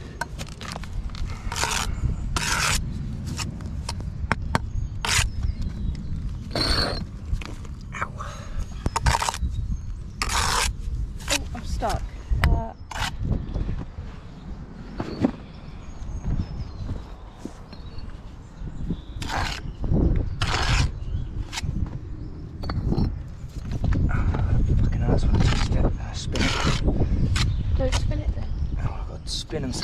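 Brick trowel scraping mortar and knocking against bricks as a course of bricks is laid: many short, irregular scrapes and taps. A steady low rumble runs underneath, loudest near the end.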